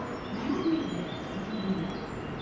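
A pigeon cooing, two low wavering coos, over steady background noise.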